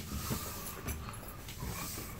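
Footsteps on carpeted stairs: a few soft, dull thuds under a second apart, with rustle from the handheld camera.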